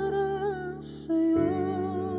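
A slow, tender ballad: a man sings held notes with vibrato over sustained accompaniment, and the chord changes about one and a half seconds in.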